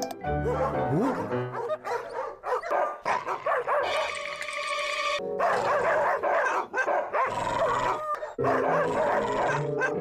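Upbeat cartoon theme music with short yelping cartoon character voices over it, and a rising comic glide about a second in.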